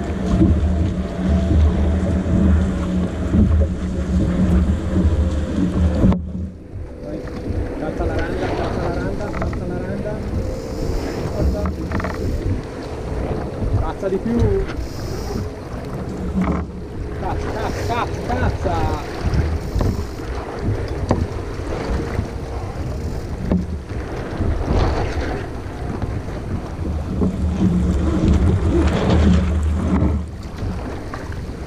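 Wind buffeting the microphone of a camera mounted on a sailboat's foredeck, with water rushing along the hull as the boat sails. The buffeting is heavy for the first six seconds, drops off suddenly, and builds again near the end.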